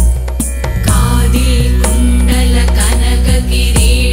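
Malayalam Hindu devotional song music: repeated low strokes that drop in pitch over a steady low drone, with a wavering melody line coming in about a second in.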